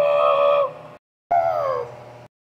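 A high human voice imitating a creature's howling cry for a toy figure: one held cry, then, after an abrupt cut, a second cry that slides down in pitch.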